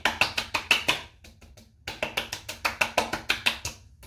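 Hands patting aftershave onto the face and neck: quick runs of light skin slaps, about ten a second, in two bursts with a pause of about a second between them.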